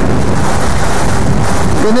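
Wind buffeting an outdoor microphone: a steady, loud low-pitched rush of noise.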